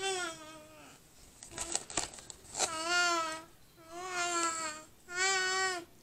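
A young girl's voice making four drawn-out, high-pitched wordless sounds, each under a second long, with short gaps between them.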